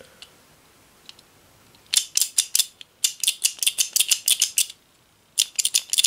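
Black elevator button fixture being handled, giving runs of rapid, sharp metallic clicks and rattles, several a second, in three bursts.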